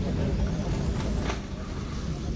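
Car engines running in an open car park: a steady low rumble, with a faint high whine rising near the end.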